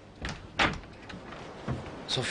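A door being opened, with a few short knocks and thuds, the loudest a little over half a second in.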